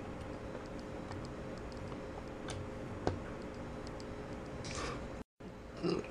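Small plastic ball-joint pieces of a Kre-O building set clicking faintly as they are snapped together: a few scattered ticks, one sharper click about three seconds in, and a short rustle near the end, over a steady low hum.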